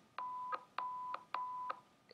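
Audio-sync test tone from a test video playing back: three short, steady, high beeps, each about a third of a second long and a little over half a second apart, each starting and stopping with a click.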